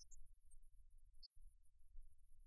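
Near silence, with only a faint, uneven low rumble that drops out briefly a little past a second in.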